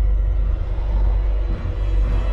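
A deep, steady rumble: the sound effect of an alien spaceship's tractor beam in an animated film.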